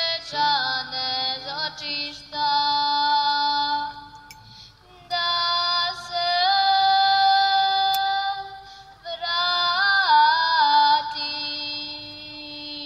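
A woman singing a slow Serbian song solo into a microphone, amplified on a concert PA and heard from among the audience. She holds long notes with ornamented bends and breaks off briefly about four seconds in and again about nine seconds in. A steady low note sounds underneath at times.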